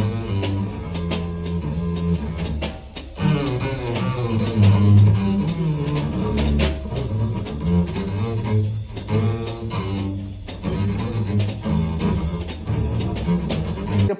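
Small-group jazz with an upright double bass plucked in a walking line, one low note after another, over steady cymbal and drum strokes.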